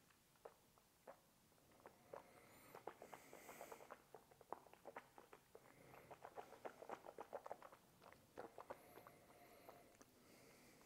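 Faint wet mouth clicks and lip smacks from a taster working a sip of spirit around his mouth: a few scattered clicks at first, then a quick, dense run of them from about two seconds in until near the end.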